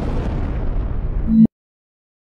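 Logo-intro sound effect: a deep, rumbling boom that carries on, swells to its loudest, and cuts off suddenly about a second and a half in.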